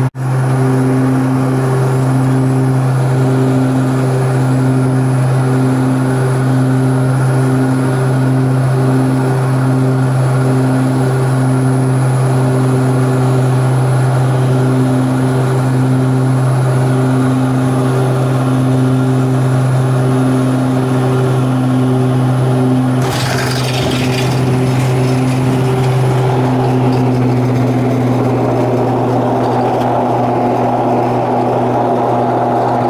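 Turboprop airliner heard from inside the cabin on landing: a steady propeller drone with a regular throb about once a second. About 23 seconds in a short burst of rushing noise marks touchdown, and the engine note then shifts as the aircraft rolls out on the runway.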